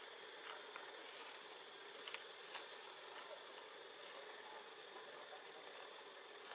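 A steady high-pitched insect drone over a faint background hiss, with a few soft ticks.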